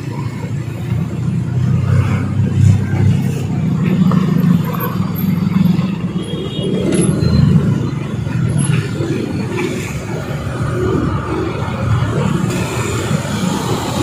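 Mixed road traffic passing close by: small motorcycle and scooter engines with a light pickup truck, cars and a minibus moving slowly past. It makes a steady low engine rumble that swells as vehicles go by.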